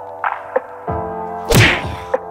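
Punch hits in a staged fight: a few short whacks, then a loud whack with a swishing rush about one and a half seconds in, over background music with steady held notes.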